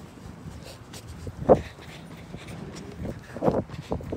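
A dog barking: one sharp bark about one and a half seconds in, then a few shorter ones near the end.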